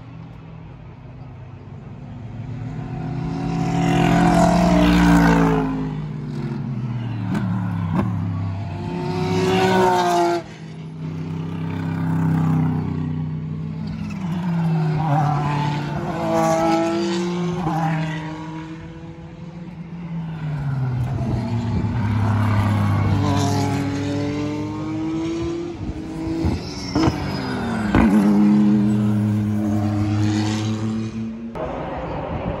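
IMSA race cars passing at speed one after another, about five passes roughly every five to six seconds. Each engine note swells as the car approaches, then drops in pitch as it goes by.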